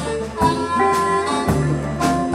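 Live blues band playing: a harmonica holds long notes over electric guitar, bass and drums, with a drum hit about every half second.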